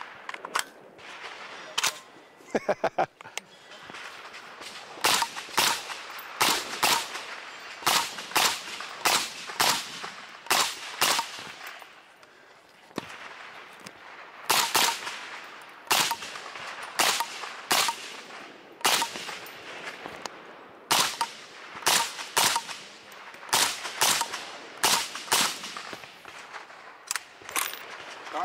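A PTR 32 KFR roller-delayed rifle in 7.62x39mm, fitted with a PTR Vent titanium suppressor, firing a long string of single suppressed shots, about one or two a second with irregular pauses.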